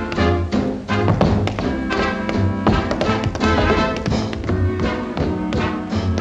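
Tap dancing: quick, rhythmic clicking runs of metal-plated tap shoes on a hard floor, over a dance-orchestra accompaniment with a pulsing bass.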